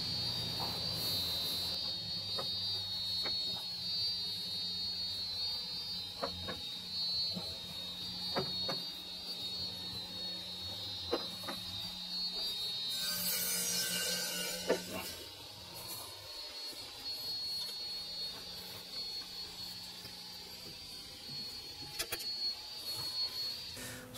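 A half-inch taper hand tap being turned by a tap wrench into a hole in a metal workpiece held in a lathe chuck, giving scattered faint clicks and ticks. A steady high-pitched electrical hum runs underneath, and there is a short hiss about 13 seconds in.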